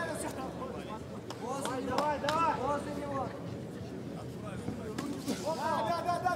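Arena crowd hubbub with a man's voice calling out, quieter than the commentary. Two short, sharp knocks come about two and five seconds in.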